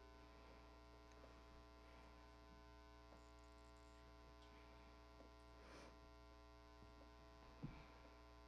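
Near silence with a steady low electrical mains hum, and a faint tap near the end.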